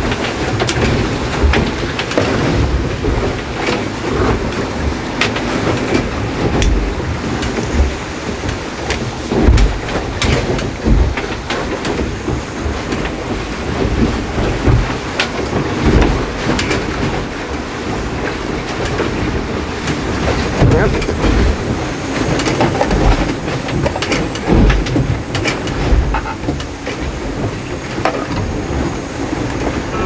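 Steady rushing and rumbling noise inside a small racing sailboat's cabin, with irregular low thumps every second or two. Small clicks and knocks come from a Jetboil stove being screwed onto its gas canister and fitted into its hanging mount.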